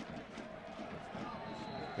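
Faint open-air ambience of an amateur football pitch, picked up by the camera microphone, with distant indistinct voices of players and spectators.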